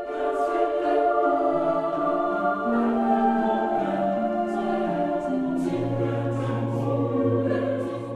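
Choral music: a choir singing slow, held chords that move step by step, with a deep bass note coming in about two-thirds of the way through.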